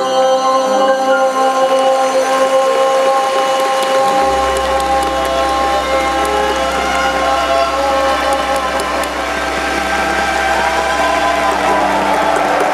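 Live string quartet and orchestra holding long, sustained chords in the closing bars of a slow ballad, with a low bass note coming in about four seconds in.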